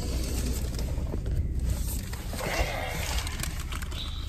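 Steady low rumble inside a car cabin, with rustling and knocking handling noise as the phone is picked up and swung around.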